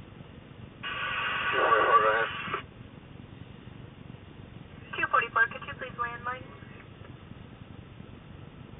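A person's voice in two short, loud, distorted bursts, about a second in and again about five seconds in. Both are unintelligible. A low steady rumble runs underneath.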